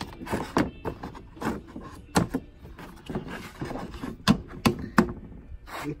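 Handling knocks as a cut plywood sink frame and a silicone lunch tray are test-fitted together: a string of sharp thunks, the loudest about four and five seconds in.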